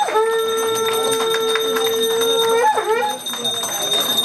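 Conch shell (shankha) blown in one long, steady note of about two and a half seconds that bends down in pitch as it ends. A brass hand bell rings and people clap under it.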